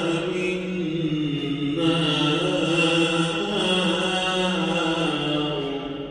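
Quran recitation: a single voice chanting in long, drawn-out melodic phrases with held notes that bend slowly in pitch. It fades out near the end.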